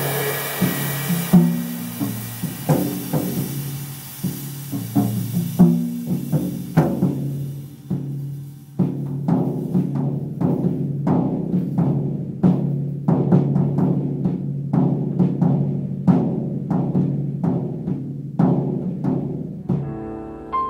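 Acoustic drum kit played with sticks. Over the first six seconds a cymbal wash rings above the drum strokes and then stops. After that comes a steady run of tom and kick drum hits, several a second, each drum ringing with its own pitch.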